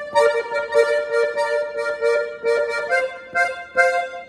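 Piano accordion's right-hand keyboard playing a melodic figure of quick repeated notes, about four to five a second, the same phrase played over again. About three seconds in, the line steps up to a higher note.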